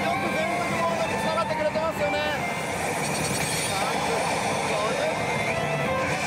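Pachislot machine game sounds, pitched voice-like effects and then a rising sweep about five seconds in, over the constant din of a pachinko hall.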